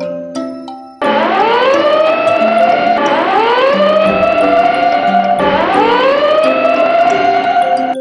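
Fire engine siren wailing, starting about a second in: three rising-and-holding wails about two seconds apart, over background music. Before the siren comes in, the music carries light mallet-percussion notes.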